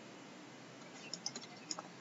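A few faint clicks and taps of a stylus on a writing tablet as digits and a bracket are written, clustered from about a second in until near the end, over low background hiss.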